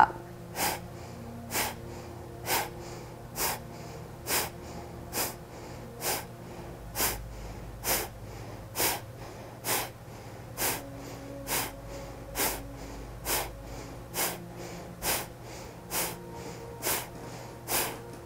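Kapalabhati (breath of fire) breathing: a steady series of short, sharp, forceful exhales through the nose, about one a second, each drawing the belly back.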